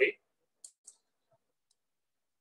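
The last of a spoken word, then two faint, short clicks about a quarter second apart and a fainter third click later, from the input device working the on-screen whiteboard as a drawn graph is erased.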